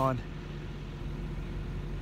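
A truck engine idling: a steady low hum with no change. A man's word trails off at the very start.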